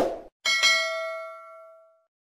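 Subscribe-button animation sound effect: a short click at the start, then a single bell ding about half a second in that rings out and fades over about a second and a half.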